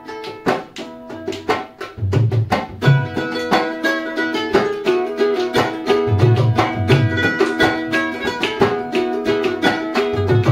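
A ukulele strummed in a quick, steady rhythm, accompanied by a Bengali dhol, a two-headed barrel drum, played by hand. The drum's deep bass strokes come in short clusters every few seconds.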